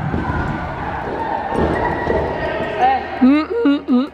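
Young girls' high voices calling out in a reverberant gym hall in the last second or so, the loudest thing here. They follow a stretch of general noise with low thumps.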